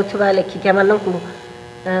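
A woman talking in Odia into a close microphone, with long held, level-pitched vowels, a short pause just past the middle, and a drawn-out sound near the end.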